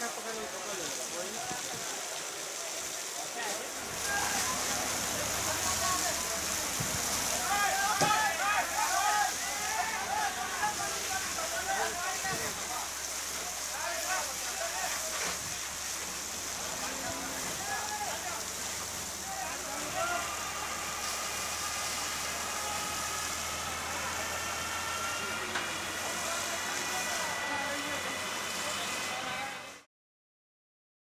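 Steady rushing hiss of a fire hose spraying water over the low hum of a fire engine, with people's voices in the middle of the stretch. From about two-thirds of the way in, a whine rises slowly in pitch.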